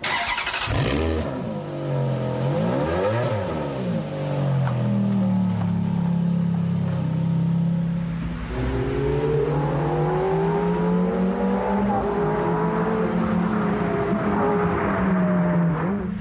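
Ferrari F430's V8 engine revving hard as the car is driven, its note climbing and dropping back again and again as it accelerates and changes gear.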